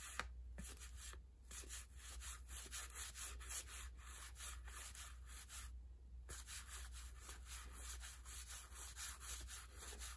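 1984 Donruss cardboard baseball cards slid off a stack one at a time by hand. A faint, quick run of rubbing swishes, about three or four a second, with a couple of brief pauses.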